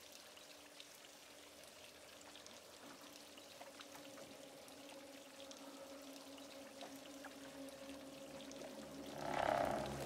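Faint water trickling and dripping in a flooded basement, with scattered small drips over a low steady hum that slowly grows louder. About nine and a half seconds in, a short, louder noise swells up.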